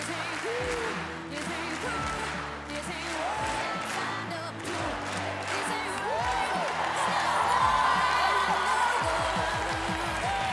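A studio audience applauds and cheers over loud music, with scattered whoops and shrieks. The crowd noise swells about six seconds in.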